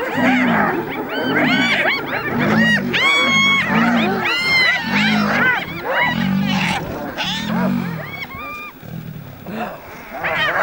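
A clan of spotted hyenas calling together in a loud, overlapping chorus of high, rising-and-falling giggles and whoops as a male lion charges among them, over low calls repeating roughly every half second. The calling thins out near the end.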